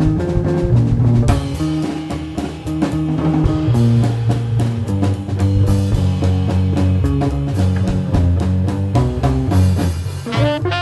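Small jazz combo playing: hollow-body electric guitar over upright bass and a drum kit with cymbals.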